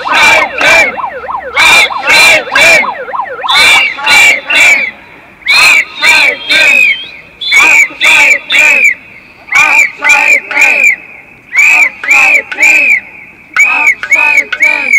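A group of protesters shouting a three-syllable chant in unison, loud and repeated about every two seconds.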